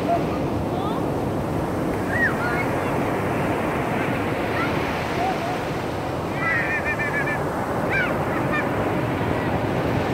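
Sea surf breaking and washing up a sandy beach, a steady rushing noise. A few short high-pitched calls come through over it, a quick run of them about two-thirds of the way in.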